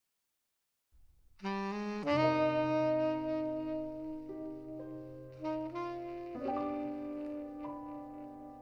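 Tenor saxophone playing a slow ballad melody in long held notes, over sustained piano chords struck about two seconds in and again near six and a half seconds. The music starts after about a second of silence.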